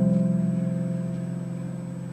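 Acoustic guitar chord left to ring, slowly dying away with no new strums.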